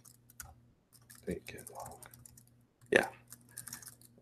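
Laptop keyboard being typed on: a run of scattered key clicks as terminal commands are entered, with a brief spoken "yeah" near the end.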